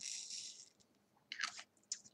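Faint rattle of resin diamond-painting drills being poured into a plastic sorting tray, followed by a couple of short scratchy clicks.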